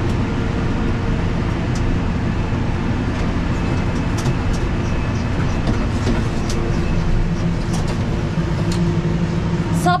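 Tractor engine running steadily, heard from inside the cab, while the tractor works a stalk shredder across a sunflower stubble field, with scattered light clicks and knocks.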